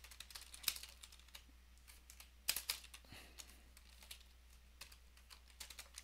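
Faint computer keyboard typing in quick, irregular keystrokes, with a louder flurry of keys about two and a half seconds in.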